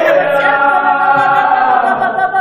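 Two men's voices singing a worship song together with long held notes, with an acoustic guitar strummed under them. The sound comes through video-call audio, thin and cut off at the top.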